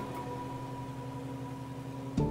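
Light aircraft piston engine droning steadily in level flight.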